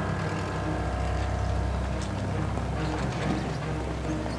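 A military truck's engine running steadily as it drives, with music underneath.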